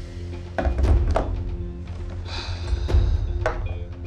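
Background score music: sustained tones punctuated by deep drum hits that come in two pairs, each pair about half a second apart.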